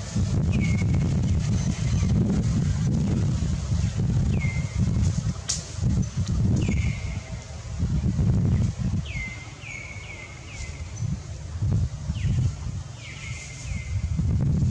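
Wind buffeting the microphone, a low rumble rising and falling in gusts. Over it, a short high chirp that drops in pitch is repeated about ten times, several in quick succession near the middle and end.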